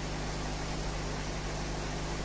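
Aquarium air pump and airlift running: a steady low hum with an even hiss of air bubbling up through the airlift tube and breaking at the water surface.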